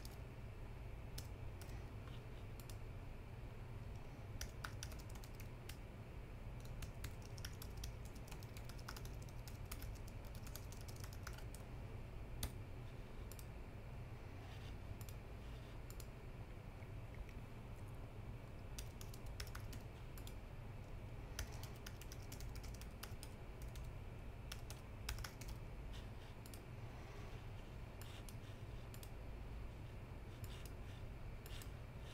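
Computer keyboard typing in irregular bursts of keystrokes, mixed with mouse clicks, over a steady low hum.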